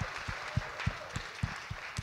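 Audience applause: a round of clapping from the seated crowd in a large auditorium.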